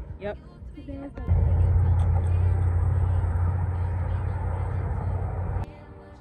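A loud, steady low rumble starts suddenly about a second in and cuts off abruptly shortly before the end.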